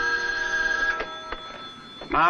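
An old desk telephone's bell ringing, which stops about a second in. Then a couple of clicks as the handset is lifted.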